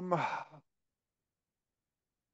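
A man's drawn-out hesitant 'um' trailing into a breathy sigh, cut off about half a second in.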